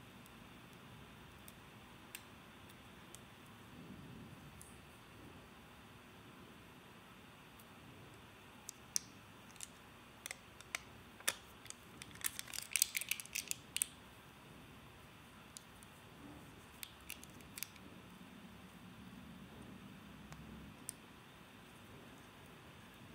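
Quiet handling of a wristwatch: scattered small clicks and taps, with a brief crackle of thin clear plastic protective film being peeled off the watch a little past halfway.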